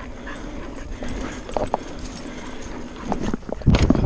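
Mountain bike rolling fast over a dirt singletrack: steady tyre and wind noise with a few knocks and rattles, then a burst of loud clattering knocks near the end as the bike jolts over rough ground.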